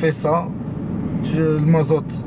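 A man talks briefly at the start and again near the end over the steady road and engine noise inside the cabin of a moving BMW F30 318d with its two-litre diesel.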